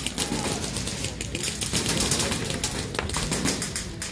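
Airsoft rifles firing in rapid bursts of sharp cracks, several groups of shots with short gaps between them.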